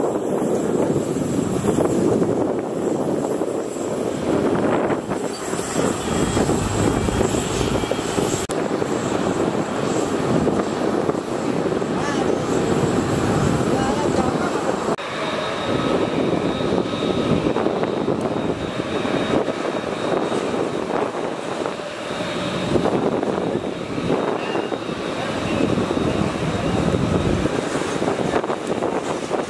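Turbofan engines of a Boeing 787 Dreamliner airliner running as it rolls out and taxis: a steady, loud rushing noise, with a faint high whine joining about halfway through.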